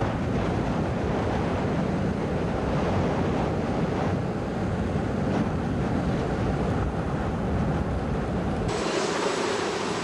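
Heavy storm surf breaking on a beach, with wind buffeting the microphone in a dense, steady rumble. Near the end it cuts off abruptly, leaving a faint steady hum and a thin high whine.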